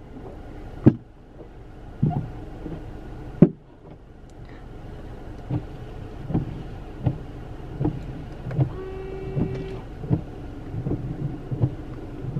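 A gas-station windshield squeegee knocking sharply against a car's windshield three times, then a low steady rumble with soft regular thumps heard from inside the car.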